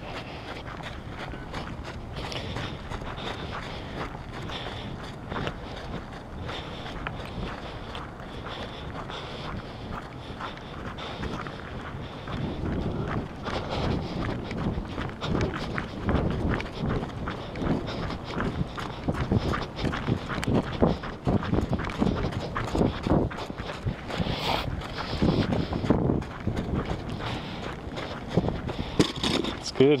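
Footsteps walking on a gritty dirt track: a steady, irregular run of steps that grows louder about halfway through.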